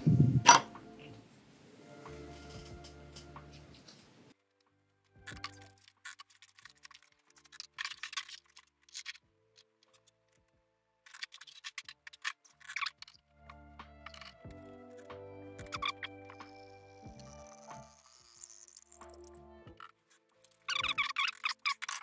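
Quiet background music in two short passages, with scattered sharp clicks and clinks of miniatures being tipped into a glass jar of paint remover.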